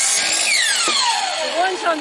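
Delta miter saw finishing a cut through a thin cedar strip, then its motor winding down after the trigger is released, a whine that falls steadily in pitch for about a second.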